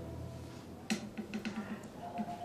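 Orchestral music fading out, then a sharp click about a second in followed by a quick run of light clicks and taps.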